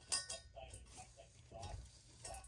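One sharp metallic clink just after the start as a small valve spring seat is set down on a Honda B18C5 cylinder head, followed by faint light clicks of the parts being handled.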